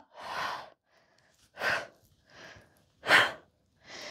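A woman breathing hard through her mouth, about five short, noisy breaths in and out, from the exertion of holding a glute bridge.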